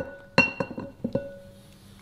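Several light clinks of kitchenware, a stainless mesh sieve and a nylon spatula knocking against glass bowls, each clink leaving a short glassy ring; they fall in the first second or so and then die away.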